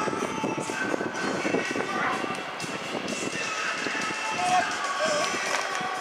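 Indistinct, overlapping chatter of several people talking at once, with no clear words.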